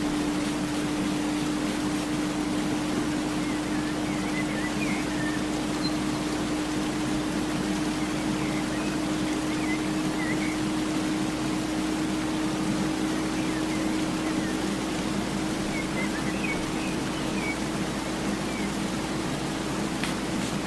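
A steady low hum over an even hiss, with faint short high chirps now and then.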